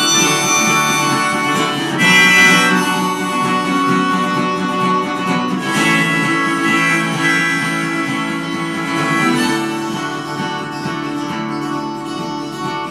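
Harmonica playing an instrumental solo of long held notes over fingerstyle acoustic guitar.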